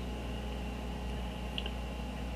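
Steady low hum of room tone, with one faint tick about one and a half seconds in.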